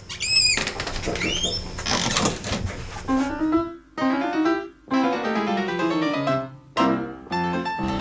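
Background piano music plays in short phrases with brief breaks. It is preceded by about three seconds of noisy sound with a few short rising whistles.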